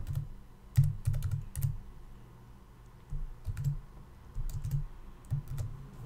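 Computer keyboard typing: irregular keystrokes in two short runs, with a pause about two seconds in.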